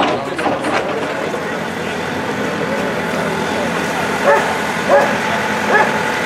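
A dog barking three times, about a second apart, in the second half, over a steady background rumble.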